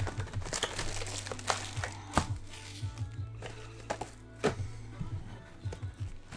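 Baseball card packs being opened and cards handled: irregular sharp crinkles and snaps of wrappers and cards, over quiet background music.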